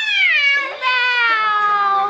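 A woman's loud, high-pitched, drawn-out squeal in two long notes, the first rising then falling, the second sliding slowly down in pitch.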